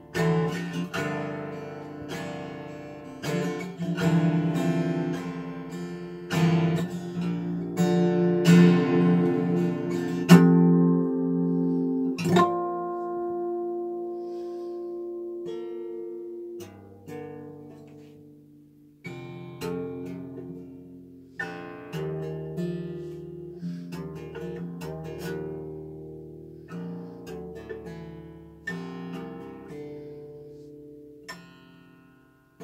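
Acoustic guitar playing a jazz piece: chords strummed and picked and left to ring. The playing is fuller and louder in the first dozen seconds. One chord then rings out and fades, and the playing after that is softer and sparser.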